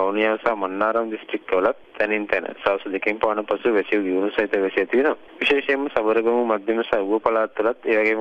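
Only speech: a man talking over a telephone line, the voice thin and narrow-band.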